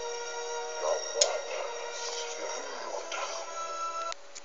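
Film soundtrack music of sustained held chords, played back from a computer and picked up by a phone's microphone, stopping abruptly at the end.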